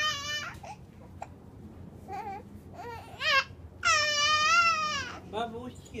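Infant crying and fussing in high-pitched, wavering wails: short cries about two and three seconds in, then a longer cry of about a second about four seconds in.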